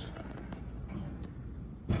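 Dover hydraulic elevator car moving off after its doors have closed, heard from the landing as a low steady hum. One sharp knock near the end.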